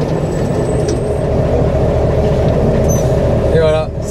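MAN KAT1 truck's air-cooled diesel engine running steadily at low speed, heard from inside the cab.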